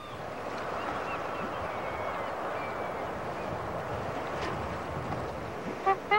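Steady rush of ocean surf and wind, a beach ambience.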